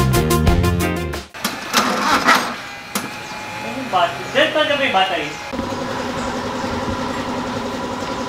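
Background music that cuts off about a second in, then voices, and from about halfway a Honda Civic's four-cylinder engine idling steadily while it is being tuned.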